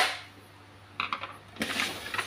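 A hard plastic clatter at the start as the printer's removed cover is set down. It is followed by a few knocks about a second in and a scraping slide as the HP LaserJet P1006's plastic body is turned around on a wooden table.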